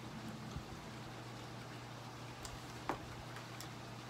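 Quiet background: a steady low hum with a few faint clicks, the sharpest about three seconds in.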